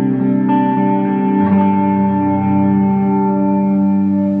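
Clean electric guitar loop played through a Seismic Audio 1x12 birch-ply cabinet with a single Celestion Seventy/80 speaker, with reverb on it. Sustained chords ring on, changing about half a second in and again near a second and a half.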